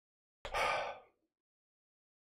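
A man sighing once into a close microphone: a single breathy exhale of a little over half a second.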